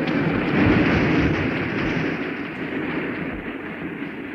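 A large assembly applauding, a dense crackle of many hands that starts at once and slowly dies away.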